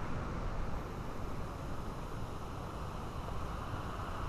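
Steady low rushing noise outdoors, even throughout with no distinct knocks or calls.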